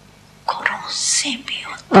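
A woman's voice: after half a second of quiet, a breathy, half-whispered utterance, then she starts speaking again near the end.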